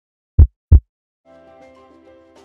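Heartbeat sound effect: one loud lub-dub double thump near the start. About a second in, faint soft music begins.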